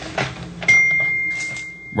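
A single steady high-pitched electronic beep tone starts suddenly under a second in and slowly fades. Before it comes faint, breathy phone-recorded audio.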